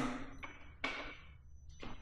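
Ignition key switch on a Suzuki GSX-R1000R being turned on: one sharp click about a second in, then a couple of fainter clicks near the end as the dash powers up.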